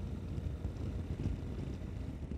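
Steady wind rush on the camera microphone over the low running noise of a Yamaha Ténéré 250 motorcycle cruising along at road speed.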